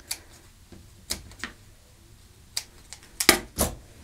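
Scissors snipping into the seam allowance of fabric piping so it will spread around a curve: a series of short, sharp snips, the loudest two close together near the end.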